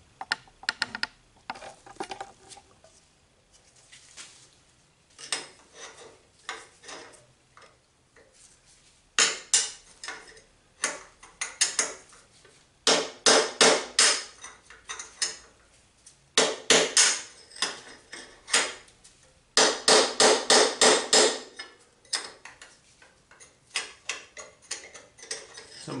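A hammer striking a steel punch to drive the upper steering head bearing race out of a Kawasaki Vulcan's steering head tube, metal ringing on metal. Light scattered taps come first, then from about a third of the way in, several quick runs of sharp strikes.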